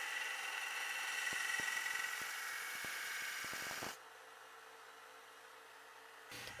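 Central Machinery 1x30 belt grinder grinding a bevel on a knife blade made from an old steel file: a steady hiss of the abrasive belt against the steel with a faint whine from the machine. It cuts off suddenly about four seconds in.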